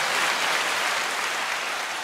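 Crowd applause: a dense, even wash of clapping that begins to fade near the end.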